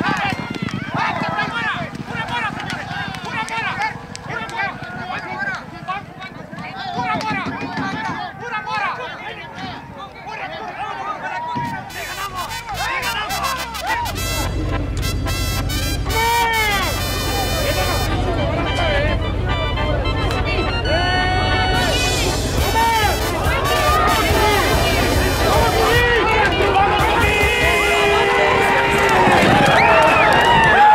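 Crowd voices and shouting for about the first twelve seconds. Then background music comes in, the instrumental opening of a Mexican horse corrido, and grows steadily louder.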